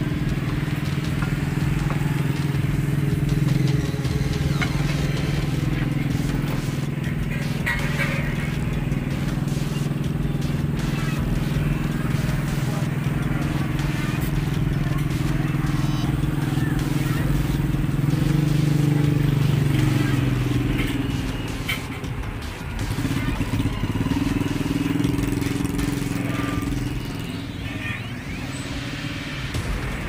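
An engine idling with a steady low hum that wavers and drops away about two-thirds of the way through, with a few light clinks.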